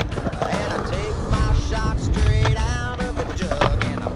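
Skateboard wheels rolling over concrete with a low rumble and a few sharp clacks of the board, heard under background music with singing.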